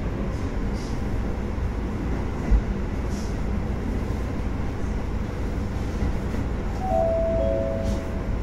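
H100 DECMO diesel-electric railcar pulling away, its engine and running noise a steady rumble heard from inside the cab. A single low thump comes about two and a half seconds in, and near the end a few short steady tones step down in pitch.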